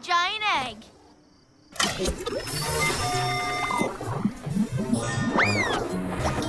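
Cartoon action soundtrack: a short wobbling vocal sound, a second's hush, then busy background music with sound effects, including a swooping whistle that rises and falls near the end.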